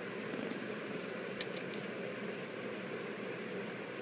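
Steady hiss of room noise, with a few faint light clicks a little over a second in.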